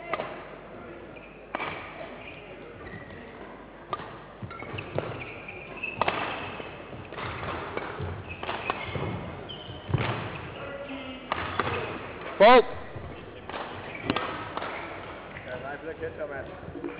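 Badminton rally: rackets striking the shuttlecock about every second or so, with one loud, brief squeal about twelve and a half seconds in.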